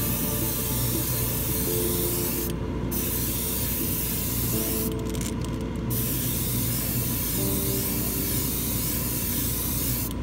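Airbrush spraying paint: a steady hiss that cuts out briefly about two and a half seconds in, and again, stuttering, around five seconds in.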